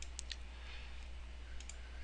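A few faint computer mouse clicks, a small cluster near the start and a pair about one and a half seconds in, over a low steady hum.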